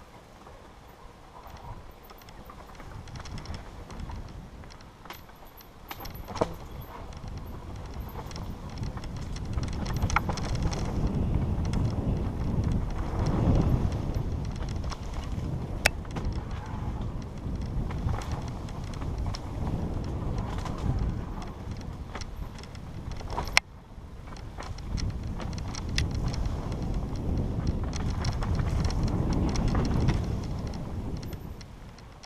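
Mountain bike riding fast down a dirt forest trail, heard from a camera mounted on the rider or the bike: tyre rumble over dirt and leaves, wind on the microphone and a steady rattle from the bike. Several sharp knocks come through it, the loudest about two-thirds of the way in, followed by a brief lull.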